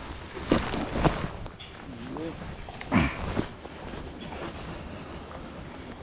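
Faint voices with a steady outdoor noise haze, and a couple of sharp knocks about half a second and a second in.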